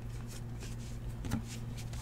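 Trading cards being flipped through by hand: faint slides and light ticks of card against card, over a low steady hum.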